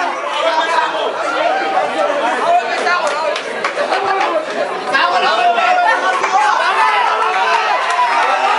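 Crowd chatter: many voices talking over one another at once, steady and loud throughout.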